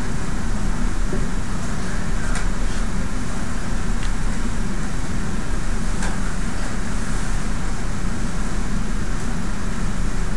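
Steady low hum and hiss of a quiet classroom's room tone, with a few faint clicks.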